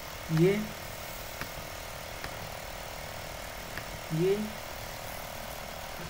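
Steady background hum with a few faint clicks of a computer mouse, between two brief spoken words.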